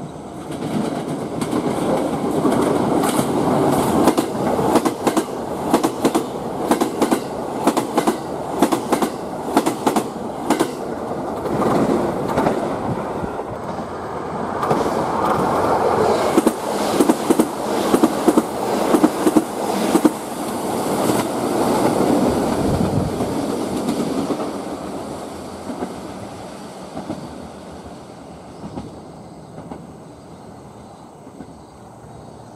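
Electric limited express train passing at speed over a Y-shaped turnout, with a steady rolling rush and two quick runs of wheel clacks over the joints and switch rails. It fades away over the last few seconds as the train goes by.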